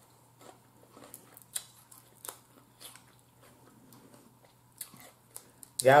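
Snow crab legs being cracked and pulled apart by hand: scattered small snaps and cracks of shell, some louder than others, with mouth and chewing sounds.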